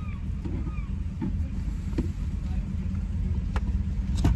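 Steady low rumble heard inside a car's cabin while it sits idling, with a few light clicks.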